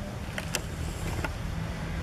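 Steady low rumble with a few sharp clicks, about half a second in and again a little after a second in.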